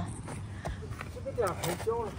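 A shovel digging in garden soil, with two faint short knocks about a second in.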